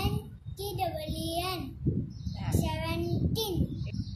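A young boy's voice chanting in a sing-song way, drawing out each syllable as he spells out number names letter by letter.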